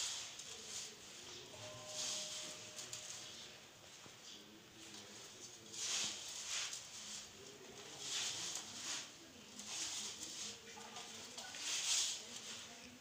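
Hands kneading wheat-flour dough in a steel plate: soft squishing and rubbing in bursts every second or two, with the dough still shaggy and just starting to bind.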